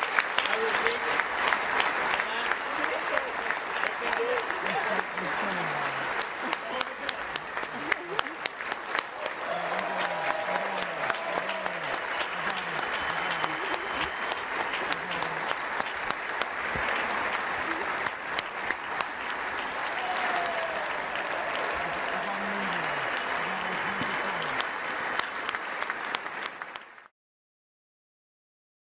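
A large standing audience applauding steadily, with voices calling out here and there. It cuts off suddenly about a second before the end.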